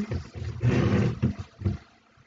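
Loud, irregular rubbing and scraping close to the microphone as a hand works yarn over the pegs of a wooden knitting loom with a loom hook; it stops shortly before the end.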